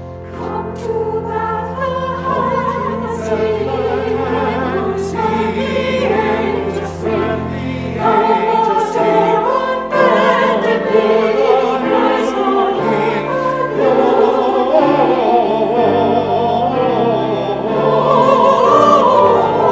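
Church choir singing in parts with a strong vibrato, entering about half a second in over held low accompaniment notes.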